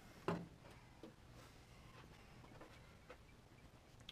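Near silence, broken by a single short knock about a third of a second in and a few faint ticks after it.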